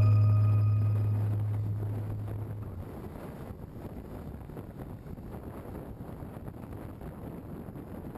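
The last held low note of a song fades out over the first few seconds, leaving a steady rush of wind on the microphone of a moving motorcycle, with no clear engine note.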